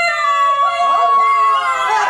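Several performers' voices holding one long, drawn-out sung note of the chant, with one voice steady throughout and another sliding up and down in pitch about a second in.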